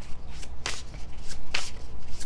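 A deck of gold-edged tarot cards being shuffled by hand: several short, papery swishes as the cards slide against each other.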